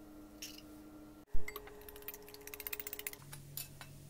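A single sharp thump about a second in, then a wire whisk beating an egg in a china bowl: quick, even clicking of the wires against the bowl, about a dozen strokes a second, for just under two seconds.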